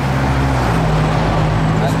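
A loud motor vehicle driving past on the road, its engine note held steady and then stepping up in pitch about half a second in, over a low rumble.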